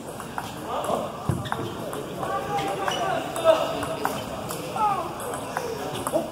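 Table tennis rally: the ball clicks back and forth off the paddles and the table in short, sharp hits, with voices in the background.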